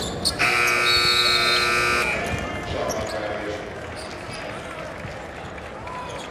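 Basketball arena horn sounding once, a steady electronic blare of about a second and a half, as the shot clock runs out. It is followed by quieter gym sounds of ball and court in the nearly empty hall.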